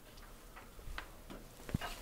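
Faint clicks: about five light clicks spread over two seconds, the clearest about a second in and near the end.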